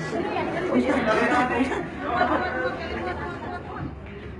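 Several people talking over one another at once: overlapping, indistinct crowd chatter.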